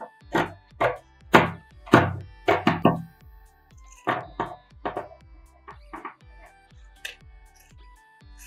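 Scissors snipping through a cotton T-shirt along marked lines: a series of sharp cutting strokes, loudest in the first three seconds, then softer snips, with quiet background guitar music underneath.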